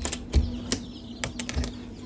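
Sharp, irregular clicks and light knocks, about seven in two seconds, from a hand working the latch of a cabinet door, over a steady low hum.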